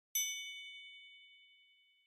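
A single bright chime sound effect, struck once just after the start and ringing out as it fades over about two seconds.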